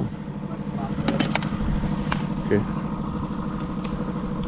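Boat outboard motor running steadily at low trolling speed, a constant low hum, with a few light clicks about a second in.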